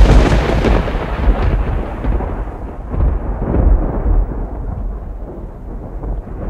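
A loud rumbling noise that starts suddenly and slowly dies away over several seconds, like a thunderclap.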